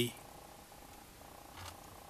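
A faint steady buzz, with a soft knock about one and a half seconds in.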